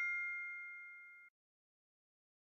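The fading ring of a bright chime sound effect, the answer-reveal 'ding', dying away and cutting off about a second and a half in.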